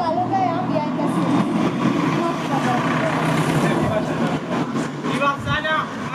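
Indistinct chatter of several people talking at once, with one voice becoming clearer near the end.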